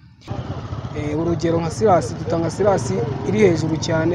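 Steady street traffic noise, starting just after a short break at the very beginning, with a person talking over it.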